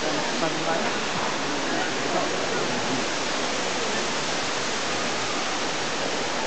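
Steady rushing background noise inside a large tropical greenhouse dome, with a faint murmur of distant voices in it.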